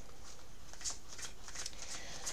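Small deck of oracle cards being shuffled by hand: soft, scattered flicks of card against card.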